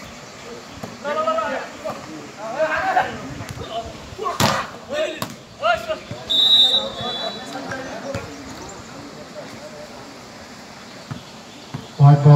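A volleyball rally with men's voices calling out and one sharp smack of the ball being struck about four and a half seconds in, followed shortly by a brief high whistle tone.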